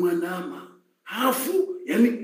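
A man's voice speaking, with a brief pause about a second in.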